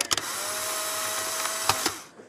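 Live room sound of a crowded gym: a steady hiss with one long, flat, held tone, likely a spectator's voice, and a couple of clicks. It cuts off abruptly near the end.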